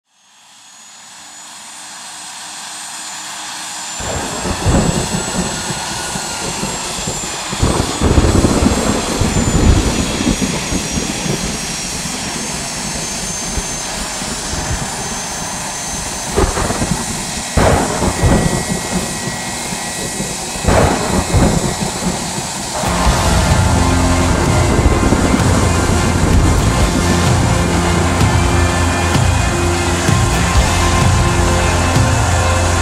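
A jet engine's high whine swells in over the first few seconds. Thunder then rumbles, with several sharp claps. About 23 seconds in, music with bass notes comes in.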